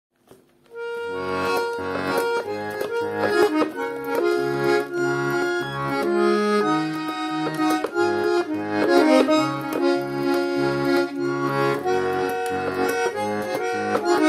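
Russian garmon (button accordion) playing a folk-style melody on the right hand over an evenly pulsing left-hand bass and chord accompaniment; the playing begins about a second in.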